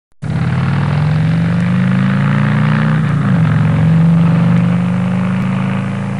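An engine running at a steady speed: its pitch creeps up slightly, dips briefly about halfway, then holds steady.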